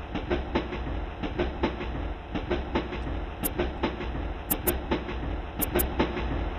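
Electric suburban train running along the track: a steady low rumble with wheels clacking over the rail joints about four times a second, and a few sharp high clicks in the second half.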